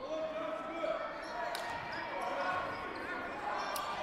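Gym ambience of a basketball game in play: a basketball bouncing on the hardwood floor, with a couple of sharp knocks, under the echoing voices of players and spectators in the hall.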